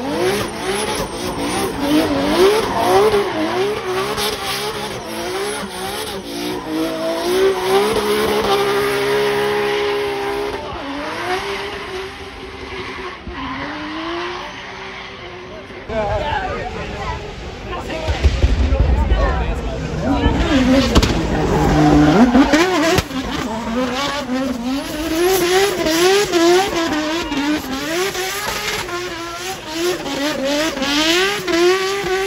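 Drift car engine revving up and down in quick repeated swings as the car slides, with tyre squeal. A deep rumble swells in a little past the middle.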